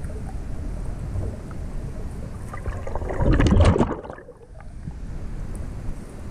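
Water heard through a GoPro's microphone during an underwater swim: a low, muffled rumble of moving water, with a loud rush of splashing about three seconds in, typical of the camera breaking the surface.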